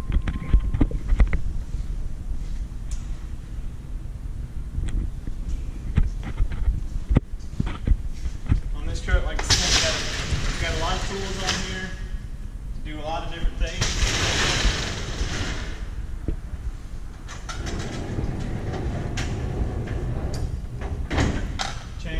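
Roll-up shutter doors on a fire rescue truck's equipment compartments sliding open, twice, each a noisy slide of about two seconds, with faint voices and thumps of handling and footsteps around them.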